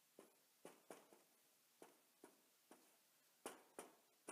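Faint taps and strokes of a dry-erase marker writing on a whiteboard: about nine short, separate ticks spread over a few seconds, the two sharpest near the end.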